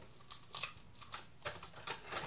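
Short, crisp crunching crackles, about six in two seconds, from Rice Krispies treats being handled and pressed.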